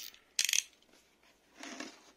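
A utility knife's blade is clicked out in a quick run of sharp clicks about half a second in. Near the end comes a short scuff of the cardboard box being handled.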